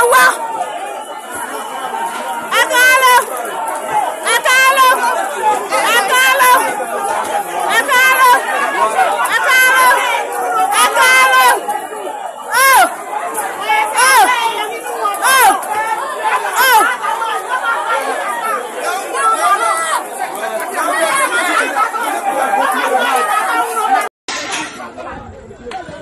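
A crowd of people shouting and yelling over one another, with many loud high cries. Near the end the sound cuts out for a moment and comes back quieter.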